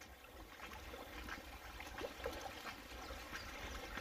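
Faint trickle of shallow floodwater running across a ford.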